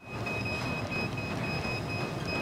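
Treadmills and other gym exercise machines running: a steady rumble with a high-pitched whine that cuts in and out.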